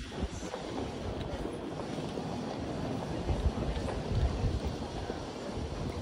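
Outdoor city ambience: a steady wash of noise with uneven low rumbling, loudest about three to four and a half seconds in.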